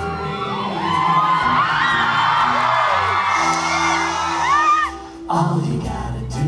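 A live rock band plays a show tune while many audience members whoop and scream over it. Near the end the music drops away for a moment, then the band comes back in.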